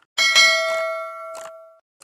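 Notification-bell ding sound effect: a sharp metallic strike that rings and fades out over about a second and a half, with a short click near the end.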